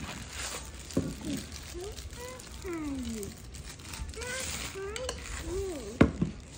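Thin plastic wrapping crinkling as it is pulled off a boxed soap dispenser, with a voice making short sounds that slide up and down in pitch through the second half.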